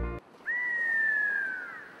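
Background music cuts off suddenly, and a moment later a single whistled note slides slowly downward for about a second and a half before fading out. It is a comic sound effect over a deadpan pause.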